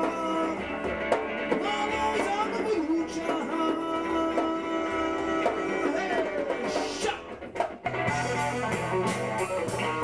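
Live blues-rock on an amplified Stratocaster-style electric guitar: sustained, bent notes with vibrato over the band. About two seconds before the end the sound briefly drops away, then the band comes back in with a heavier bass and a run of quick drum and cymbal hits.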